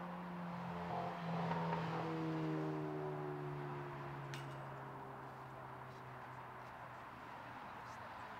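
A vehicle passing on the road: tyre and engine noise swells over the first two seconds and fades slowly, its engine hum dropping slightly in pitch as it goes by. A faint click about four and a half seconds in.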